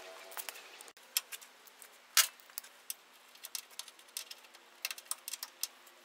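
Irregular sharp metallic clicks and clinks of hand tools against the car's steel frame and fittings, the loudest about two seconds in.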